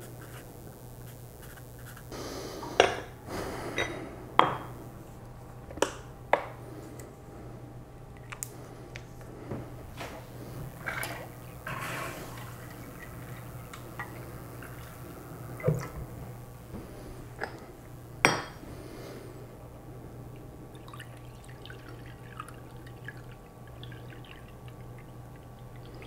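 Glass and ceramic jars clinking and knocking as they are handled and set down on a plastic kitchen scale, with a few sharp knocks among quieter handling. Water is poured and dripping into a jar.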